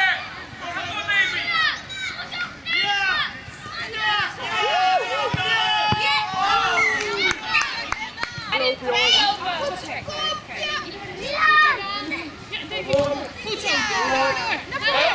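Children's voices shouting and calling out, several high-pitched voices overlapping, with a few short sharp knocks in the middle.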